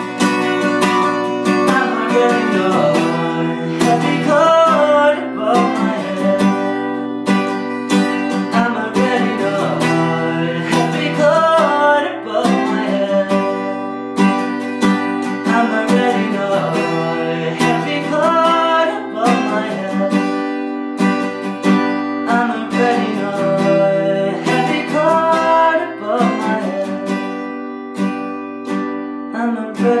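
Acoustic guitar, fitted with a capo, strummed in a steady rhythmic chord pattern, with a man singing phrases over it that come back every few seconds.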